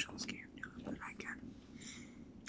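A man whispering softly close to the microphone, with a few small mouth clicks.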